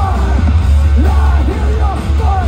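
Post-hardcore band playing live through a festival PA, heard from the crowd: loud electric guitars and drums over heavy, booming bass, with shouted vocals.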